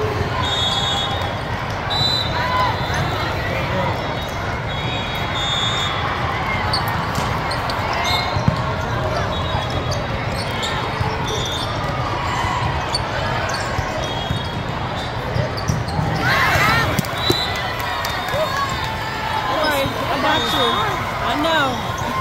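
Indoor volleyball match in a large hall: a steady hum of crowd chatter, short high squeaks of shoes on the court, and a sharp ball hit about eight seconds in. Voices rise into shouts about three-quarters of the way through and again near the end as a rally finishes.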